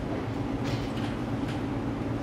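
Steady low hum of conference-room background noise, with a couple of faint soft rustles or clicks in the middle.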